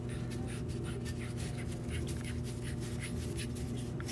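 Wooden blank being screwed by hand onto a wooden jig: a run of small, quick scratchy rasps of wood turning on the screw, over a steady low hum.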